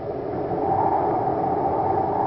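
A steady rushing noise, a sound effect in an old-time radio drama recording. It swells over the first second and then holds.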